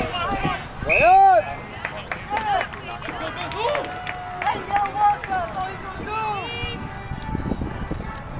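Shouts and calls of players and spectators across an outdoor rugby pitch: several separate yells with rising and falling pitch, the loudest about a second in.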